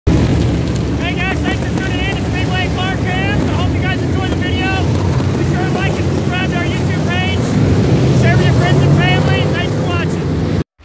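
Dirt super late model race cars' V8 engines running loud as the cars pass on the track, the rumble swelling a little near the end, with a man's voice talking over it.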